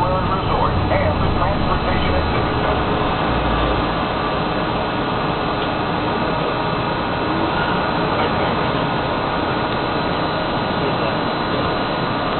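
Walt Disney World monorail running, heard from inside the front cab: a steady rumble and hiss of the train on its beam. The low rumble eases about four seconds in.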